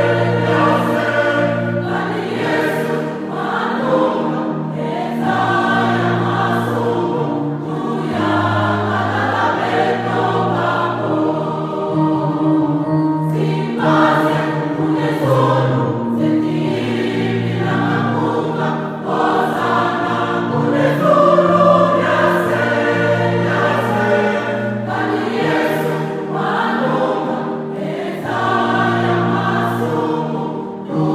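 Choir singing a gospel song.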